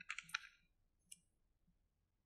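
A quick cluster of small clicks and handling noises, then one more click about a second in: hands handling small items at a whiteboard.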